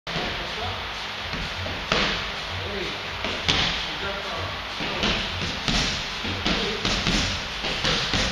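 Gloved strikes landing on a hand-held strike pad: a string of sharp thumps, sparse at first and coming several in quick succession in the second half.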